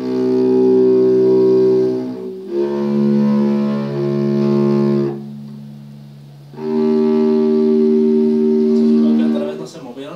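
Cello bowed by a beginner: three long sustained notes, with a short break after the first and a longer one after the second, during which the low string keeps ringing faintly. A stopped note comes out off pitch, which the teacher puts down to where the finger presses the string.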